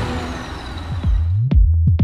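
A 2006 Toyota Highlander's engine running just after being started, fading out about a second in. Electronic music with a heavy kick drum, about two beats a second, comes in and takes over.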